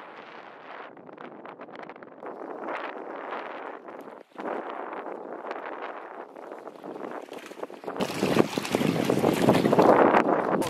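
Wind buffeting the microphone while moving over open water: a steady rushing noise with no clear engine note. It cuts out for an instant a little after four seconds and turns much louder and gustier about eight seconds in.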